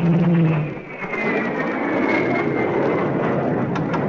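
Airliner engines running loud, with a high whine that slowly falls in pitch. A short low tone sounds at the very start.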